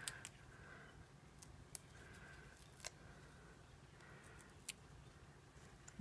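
Near silence, broken by a few faint ticks and clicks as small die-cut paper pieces are handled and pressed into place on card stock.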